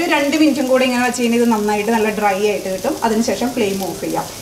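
A woman's voice talking throughout, over light sizzling from chickpeas frying in a pan.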